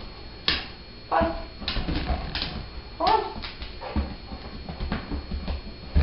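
A dog giving two short, high whimpers, about a second in and about three seconds in, with a few sharp clicks in between.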